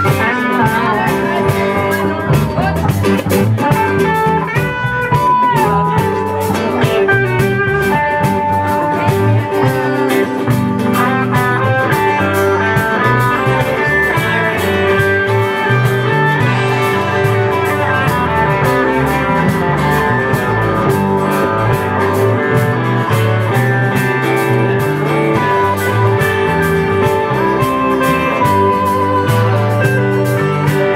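A live rock band playing an instrumental jam: electric guitars play lead lines with bends over rhythm guitar and bass guitar.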